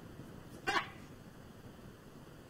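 One brief vocal sound from a person, about two-thirds of a second in, against quiet room tone.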